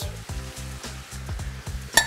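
Sweet peppers, onions and crab meat sizzling in a skillet as diced tomatoes go in, under background music with a steady beat.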